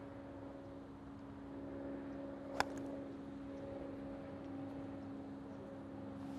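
An iron striking a golf ball off the turf: a single short click about two and a half seconds in, over a steady low hum.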